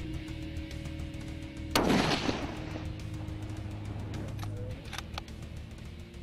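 A single rifle shot from a scoped bolt-action hunting rifle about two seconds in: a sudden sharp report that trails off briefly, over background music.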